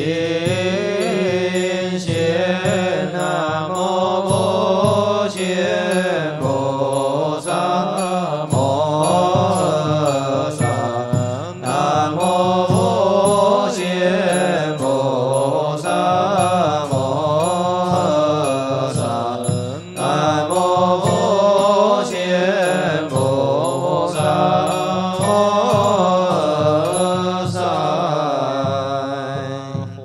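Chinese Buddhist liturgical chanting (fanbai) by an assembly of monastics: a slow, drawn-out melody with wavering, sliding pitch, kept over a steady knocking beat. The chant dies away at the very end.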